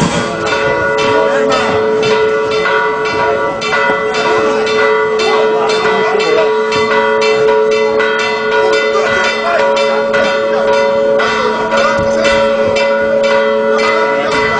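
Church bells ringing a fast, even peal, about three strikes a second, their tones hanging on between strikes.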